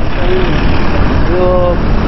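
Constant low rumble of street traffic, with a white van driving past close by. A man's voice is heard briefly twice, the longer utterance near the middle.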